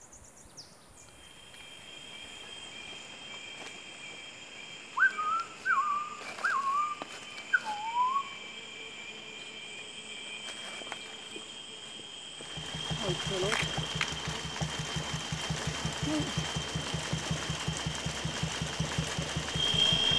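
Tropical rainforest ambience: insects trill steadily on high pitches, and a bird gives four short whistled notes that rise and fall, about five to eight seconds in. From about twelve seconds a louder insect buzz sets in with a rapid low pulsing underneath.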